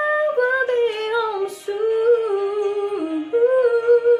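A woman singing a slow melodic line of held notes into a handheld microphone, the pitch falling through the middle and rising again about three seconds in.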